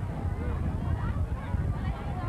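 Crowd chatter in stadium bleachers, many voices overlapping without clear words, over a heavy, uneven low rumble.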